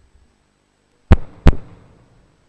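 A microphone tapped twice, two loud sharp thumps about half a second apart, each with a short ringing tail.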